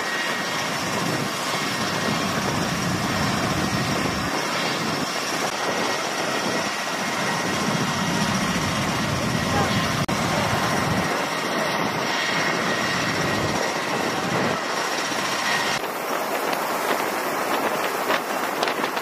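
MV-22 Osprey tiltrotor aircraft running nearby: a steady noise of turboshaft engines and proprotors with a faint high whine.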